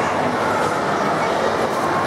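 Steady rush and splash of water pouring from an aquarium's hang-on-back filter outflow into the tank.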